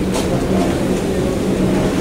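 Steady low rumble with a constant low hum underneath: continuous background room noise, with no distinct event in it.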